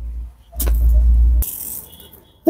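Low buffeting rumble on the phone's microphone as it is moved about inside the car, with a brief knock about half a second in and a short rustle near the end.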